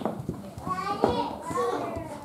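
A child's high voice calling out, with a short knock right at the start.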